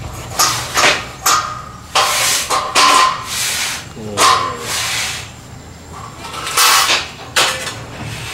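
Steel stage-scaffolding pipes and frames being handled: irregular metal clanks and knocks, some ringing, with a few longer scraping sounds.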